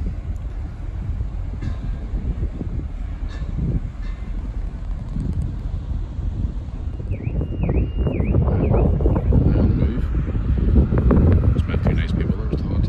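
Wind buffeting the phone's microphone on a ferry's open deck, over a steady low rumble, getting louder in the second half.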